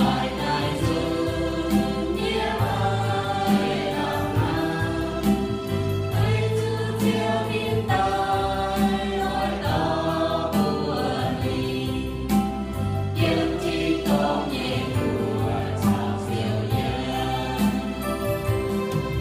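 A mixed group of men's and women's voices singing a hymn in the Iu-Mienh language through microphones, over steady held notes underneath.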